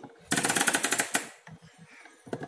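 A toy washing machine running for about a second: a rapid, loud rattling clatter, then a few faint clicks.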